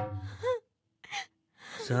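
Background music fades out within the first half second. After a pause comes a short gasp, and near the end a voice starts up in an exclamation.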